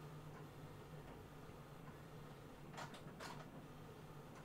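Near silence: room tone with a faint steady low hum and two soft brief sounds about three seconds in.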